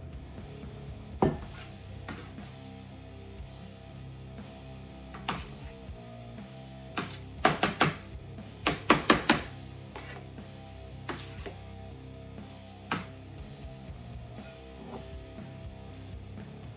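Guitar background music runs under sharp clicks of a metal fork striking and scraping a metal sheet pan. The clicks come singly and in two quick runs of four or five near the middle.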